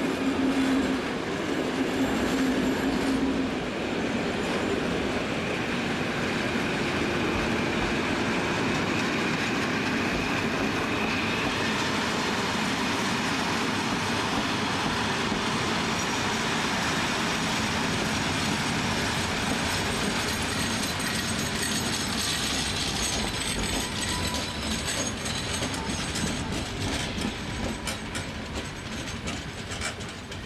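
Vintage Dutch Plan U diesel-electric trainset passing close by, with a low engine note as the front goes past. Then a steady rush and clatter of wheels over the rail joints, with a thin high wheel squeal late on.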